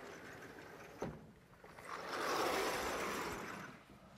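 Vertical sliding classroom blackboard panels being moved: a click about a second in, then a rolling, sliding rumble that swells for about two seconds and dies away.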